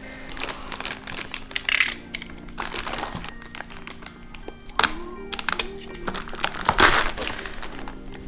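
Clear plastic packaging bag crinkling and rustling in irregular crackles as it is handled and slit open with a utility knife. Faint background music plays underneath.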